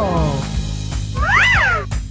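Background music with cartoon sound effects: a falling tone right at the start, then one meow-like cry that rises and falls in pitch around the middle.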